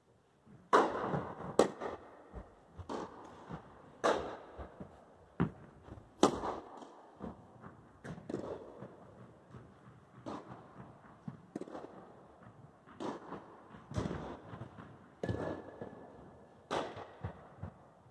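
Tennis rally: a ball struck back and forth with rackets, with bounces between the hits, each impact ringing in a large indoor hall. The loud hits come from the near end and the fainter ones from the far end, every one to two seconds, with a brief squeak near the end.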